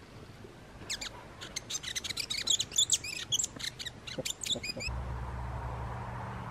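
New Zealand fantail (pīwakawaka) singing a quick run of high, squeaky chirps for about four seconds. The song stops abruptly near the end and a steady low rumble takes over.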